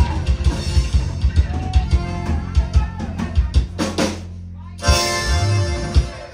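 Live conjunto band playing: button accordion, electric bass, guitar and a drum kit on a steady beat. After a short break about four seconds in, the song ends on a loud held final chord.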